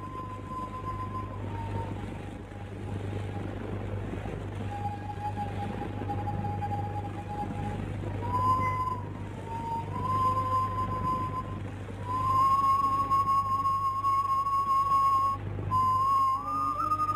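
Film background music: a slow melody of long held notes on a flute-like instrument, growing louder about three-quarters of the way through, over a steady low hum.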